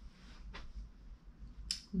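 Quiet room tone with a faint short click about half a second in and a sharper, brighter click near the end.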